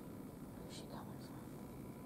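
A person whispering faintly, a couple of short hissy syllables about a second in, over a steady low background hiss.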